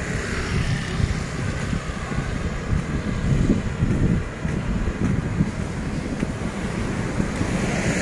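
Wind buffeting the microphone in a low, flickering rumble, with light road traffic on a wet street: a car and a motorbike passing.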